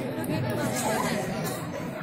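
Indistinct talking: voices chattering, with no clear words.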